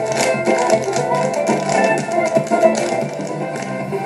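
Irish dance music with the rapid, rhythmic clicks of hard-shoe step dancing on a stage floor over it, heard through a television's speaker.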